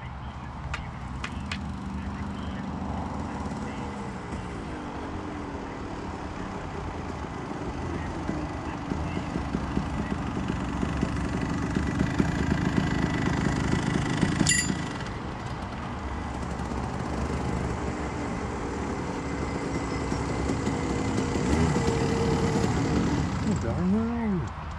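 Several rental go-kart engines running together, idling and revving, their pitches gliding up and down, with the camera kart's engine loudest. A sharp click comes about fourteen seconds in, and near the end one engine's pitch dips and rises again.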